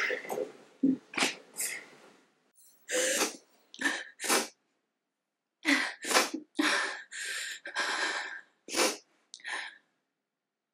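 A woman crying: a run of short sobbing breaths and sniffles, with a pause of about a second just before halfway.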